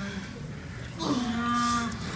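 A low, steady horn-like electronic tone sounding in blasts of about a second with short breaks. Each blast opens with a brief slide down in pitch.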